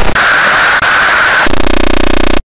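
Loud, harsh distorted noise, the kind made by a heavily processed audio effect: a steady high whine over hiss, which changes about one and a half seconds in to a coarse buzzing drone.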